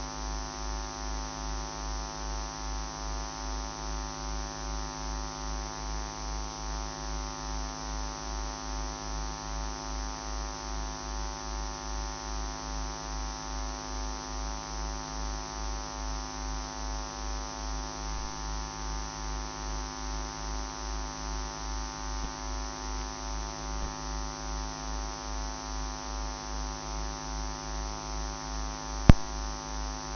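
Steady electrical hum with many overtones and a regular low throb, running under an otherwise wordless broadcast feed. One sharp click comes near the end.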